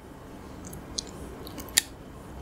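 Quiet eating sounds of a gummy candy: a few short, sticky clicks as the gummy is picked up and put into the mouth.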